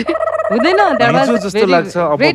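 People talking, with a steady warbling tone held over the voices for about a second and a half, stopping shortly before the voices do.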